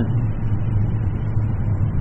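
1982 Yamaha XJ1100 Maxim's inline-four engine running steadily at cruising speed, with wind noise on the microphone.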